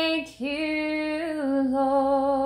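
A woman singing a slow worship song unaccompanied, holding long notes. One note ends just after the start; after a brief breath a new note is held, and it steps down in pitch about a second and a half in.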